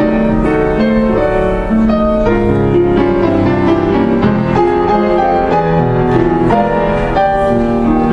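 Solo keyboard music: a slow, gentle melody over held chords, a love song composed by the player for his wife.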